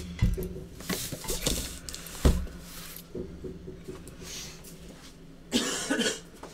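A man coughing and clearing his throat several times, with a rougher, longer cough near the end. Between the coughs come knocks and a heavy thump as a cardboard case is handled on the table.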